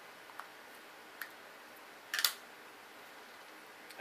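A few small plastic clicks as the pieces of a clear plastic articulated figure stand are handled and fitted, the loudest just after two seconds in, over faint room hiss.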